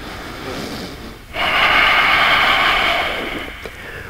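A man breathing hard through a held core exercise: a quieter breath, then a long, loud breath starting about a second and a half in and fading away near the end.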